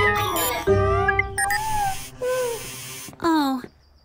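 Cartoon soundtrack: bright background music with short, chirpy character vocal sounds. A few quick falling pitch slides come about three seconds in, then the sound cuts to a brief silence.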